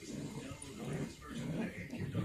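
Small dog making short vocal sounds, with television talk in the background.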